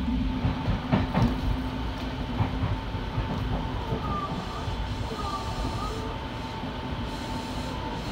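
Electric commuter train running, heard from inside the driver's cab: a steady rumble of wheels on rail with a few sharp clicks about a second in, over a faint steady whine.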